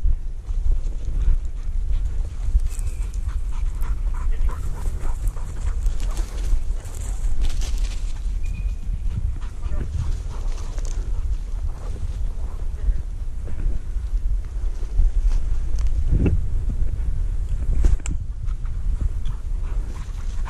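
Footsteps and rustling through dry brush and undergrowth on the move, with a steady low rumble of wind or handling on the microphone. A brief pitched sound comes about sixteen seconds in.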